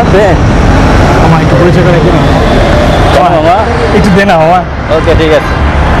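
Men's voices talking in Bangla over a steady low rumble of street traffic.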